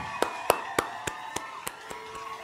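A run of sharp, evenly spaced taps, about three a second, over faint steady tones.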